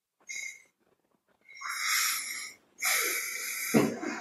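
Three short, breathy hisses with a thin whistle in them, picked up by a video-call microphone; the middle two are longer and louder.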